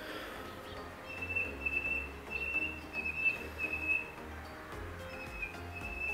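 A bird calling outdoors: a run of short, high whistled notes at nearly the same pitch, starting about a second in and coming again near the end, over soft background music.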